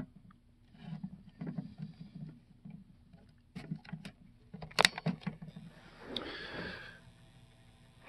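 Small cassette-deck mechanism of an Aiwa CS-P500 mini boombox running with no tape loaded, with a faint steady motor hum. Several sharp clicks and handling knocks are heard, the loudest about five seconds in.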